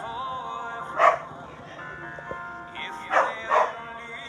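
A dog barks three times over music playing from a television: once about a second in, then twice in quick succession near the end.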